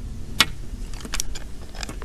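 Handling noise: a plastic lamp and its cable being moved about by hand, giving a few light clicks and rattles, the sharpest about half a second in, over a steady low rumble.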